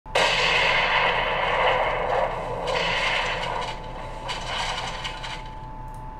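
Stock explosion sound effect: a sudden blast just after the start, then a long noisy rumble that fades away over about five seconds.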